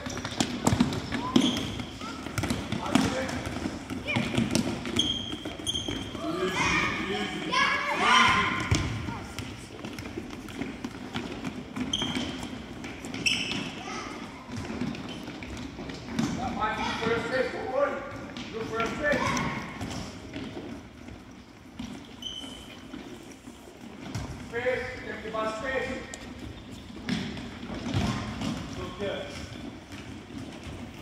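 Children shouting to each other in a reverberant gym, with a soccer ball being kicked and bouncing on the hardwood floor. Short high squeaks of sneakers on the wood are heard throughout.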